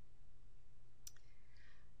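A single sharp computer mouse click about a second in, over a low steady hum.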